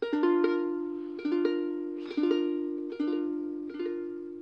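Mahalo ukulele strumming a B flat major chord, played as a barre chord with the index finger across the bottom two strings, about five times roughly a second apart. Each strum rings and decays before the next.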